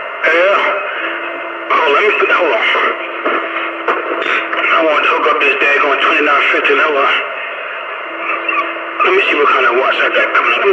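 Voices coming over a two-way radio channel, thin-sounding and garbled so the words can't be made out, with a steady faint tone running underneath. The voices pause briefly about a second in and again near the end.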